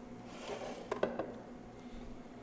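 Kitchenware being handled: a brief soft rustle, then three quick light clinks about a second in, over a faint steady room hum.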